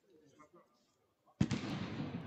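A single sharp bang or slap about one and a half seconds in, echoing through a large hall and dying away over more than a second.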